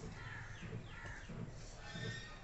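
Faint bird calls, a few short falling calls one after another in the first second and a half, crow-like in character.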